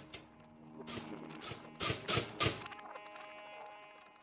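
Toaster mechanism sound effects: a run of clicking, rattling noises that grows louder, ending in three sharp, loud ones about two seconds in.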